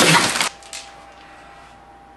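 Brown packing paper crumpled and rustled inside a cardboard box in a short loud burst about half a second long, then quiet room tone with a faint steady hum.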